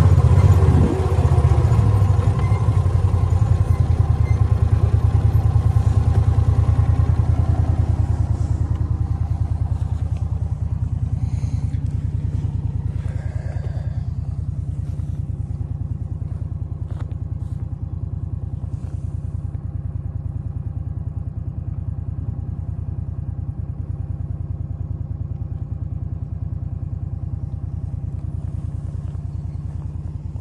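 Engine of a John Deere Gator XUV utility vehicle running steadily. It is loudest for the first several seconds, then settles lower and steady, with a few light clatters around the middle.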